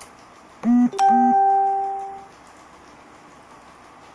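An electronic chime: two short buzzing tones, then a single ding that rings and fades away over about a second and a half.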